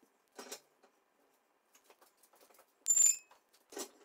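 A small metal object, such as a tool, strikes the concrete floor about three seconds in with a sharp clink and a brief, high ring. It sits between two softer scuffs of handling on the floor.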